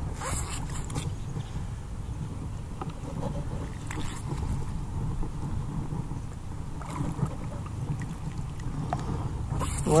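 Lake water sloshing as a long-handled sand scoop is worked through the water and into the bottom, with a few faint knocks over a steady low rumble.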